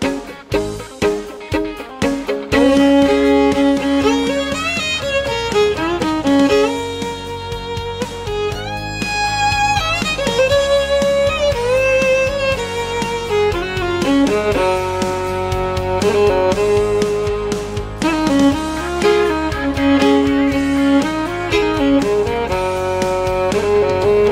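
Fiddle playing a country overdub part over the song's backing track, which carries a steady low bass underneath. It starts with short choppy strokes, then from about two and a half seconds in moves to long held notes and sliding phrases.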